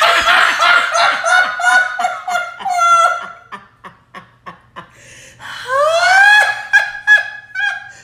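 Hard, high-pitched laughter in long fits, broken into short gasping pulses midway, then climbing sharply in pitch into a squealing laugh about two-thirds of the way through.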